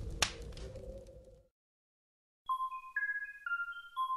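A logo sting's low rumble with one sharp hit just after the start, fading away by about a second and a half. After a second of silence, a tinkling chime melody of single high notes, about two a second, begins.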